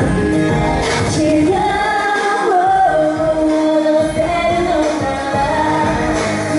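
Live pop ballad: a woman sings into a handheld microphone over backing music, holding long sustained notes through the middle.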